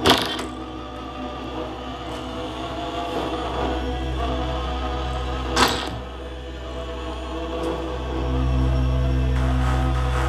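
Live electronic music: layered sustained tones over a low drone, with a sharp noise hit right at the start and another about five and a half seconds in. A deep bass swell comes in about eight seconds in and the music grows louder.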